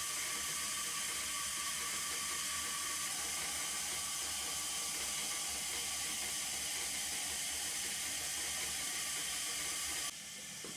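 A steady, even hiss, like rushing water or air, with a faint high tone in it; it cuts off suddenly at the end.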